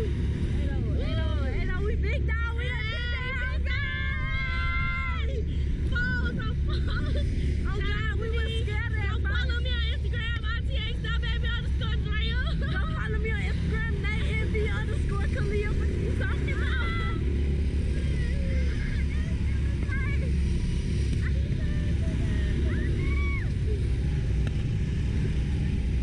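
Two riders on a Slingshot reverse-bungee ride screaming and shrieking, over a steady heavy rumble of wind buffeting the onboard camera's microphone. The screams die down after about seventeen seconds, leaving mostly the wind.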